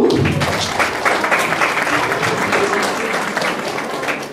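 Audience applauding, many hands clapping together, easing off slightly toward the end.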